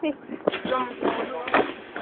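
Voices talking and calling, with a couple of sharp knocks about half a second and a second and a half in.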